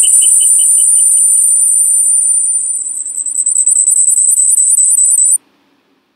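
Loud, high-pitched electronic squeal of audio feedback on a video call, a steady whistle with a fainter pulsing beep under it for the first second or so, cut off abruptly about five seconds in as the meeting is left.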